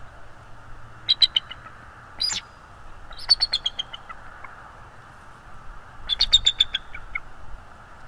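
Bald eagle calling: four bursts of thin, high piping chirps, the longer series stepping down in pitch, the last and longest about six seconds in.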